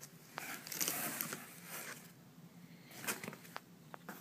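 Shirts being handled and rummaged through: rustling in bursts in the first half, then a few sharp clicks and ticks near the end.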